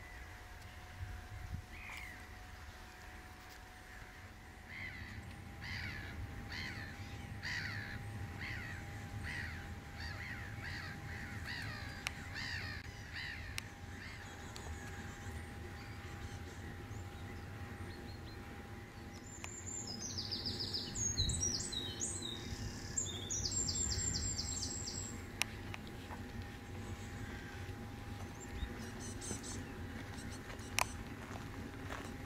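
A bird calling over and over, about one and a half calls a second, through the first half; a burst of high-pitched birdsong follows later on, with a faint steady tone underneath throughout.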